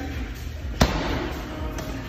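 Rubber medicine ball slammed onto rubber gym flooring once, a sharp thud just under a second in, over background music.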